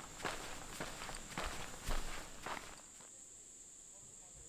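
Footsteps of a person walking in sneakers over gravelly ground, about two steps a second, stopping about three seconds in.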